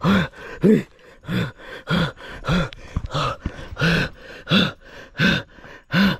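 A man panting hard with a voiced, groaning 'ah' on every breath, a steady rhythm of about three breaths every two seconds, each rising and falling in pitch.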